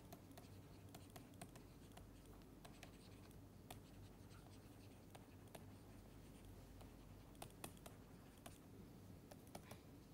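Very faint, irregular taps and scratches of a stylus writing on a tablet, over a steady low hum.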